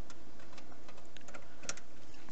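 Scattered light plastic clicks and taps, unevenly spaced, from a network cable being handled and plugged into the computer, over a steady background hiss.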